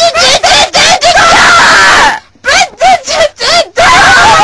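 A puppeteer's high-pitched voice screaming loudly without words. It goes in quick short yells, with a longer held scream from about one to two seconds in and another starting near the end.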